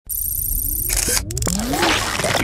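Animated-logo intro sound effects: a low rumble under a high shimmer, a sudden whoosh about a second in, then several electronic tones sliding up and down in pitch.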